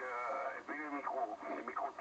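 An amateur radio operator's voice received over single-sideband on a shortwave transceiver, heard through its loudspeaker: narrow and thin, with no low bass and no bright top.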